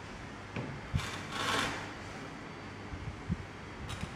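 Steady low room hum with a few light knocks as a glass sedimentation cylinder is handled on a lab bench, and a brief soft hiss about a second and a half in.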